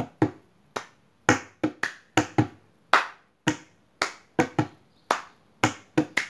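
Hands playing a percussion rhythm on a tabletop: a pattern of sharp slaps and taps, some deeper and some brighter, at uneven but repeating spacing.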